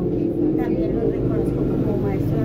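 A woman's voice speaking over a steady low background rumble.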